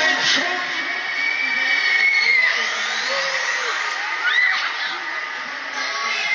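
Riders screaming on a spinning Mondial Top Scan thrill ride: one long held scream, then a shorter one about four seconds in, over crowd voices and fairground music with a rising sweep.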